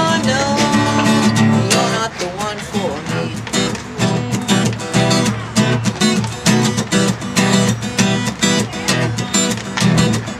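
Acoustic guitar strummed in a steady rhythm, playing the chorus chords E minor to D to C.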